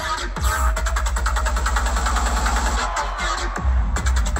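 Electronic dance music with heavy bass, played loud by a DJ over a large festival PA. Near the end the high end drops out for a moment, with the bass carrying on.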